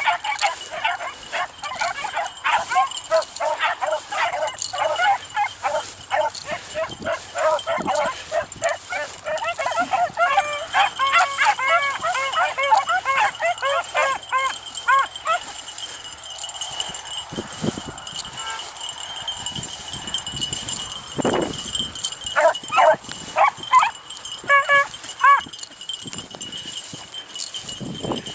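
A pack of beagles baying on a rabbit's scent trail: a dense chorus of overlapping bays for about the first fifteen seconds, thinning to a few scattered bays later on.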